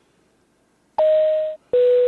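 Airliner cabin PA chime: two tones about a second in, a higher one and then a lower one, each about half a second long, with a hiss behind them.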